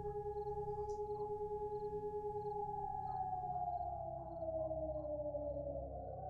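Ominous synthesized drone from a film score: two sustained tones with a faint low rumble beneath. Over the second half both tones slide slowly downward in pitch, and the sound pulses faintly and evenly throughout.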